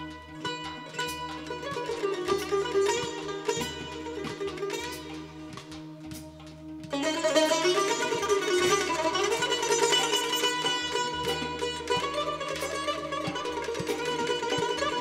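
Azerbaijani tar playing a fast plucked melody, with an oud, over steady held low notes in an instrumental passage of a traditional Azerbaijani song. About halfway through, more of the ensemble comes in and the music becomes suddenly louder and fuller.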